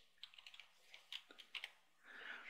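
Faint typing on a computer keyboard: a quick, uneven run of about a dozen keystrokes as an email address is typed into a form field.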